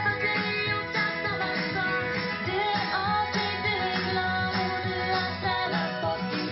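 A song with guitar and a singing voice, streamed over Bluetooth from a laptop and played through a Bose SoundLink Wireless speaker.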